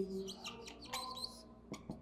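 Marker pen squeaking faintly across a whiteboard in several short strokes as words are written, with a few light ticks near the end.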